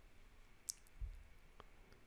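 Faint clicks of a computer mouse against quiet room hiss: a sharp click about two thirds of a second in, a low thump about a second in, and a softer click a little later.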